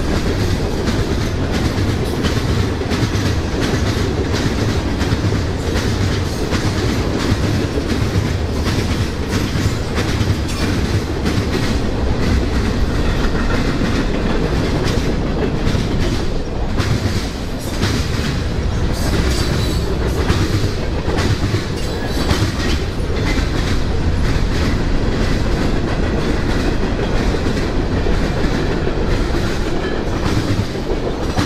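CSX mixed freight train rolling past close by: a steady rumble of steel wheels on rail with a continuous clatter of clicks as the car wheels run over rail joints.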